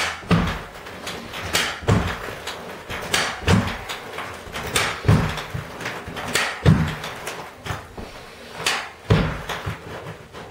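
A carpet stretcher worked stroke after stroke as carpet is stretched tight along a wall, each stroke giving a sharp knock with a dull thud under it, often in pairs, about every second and a half.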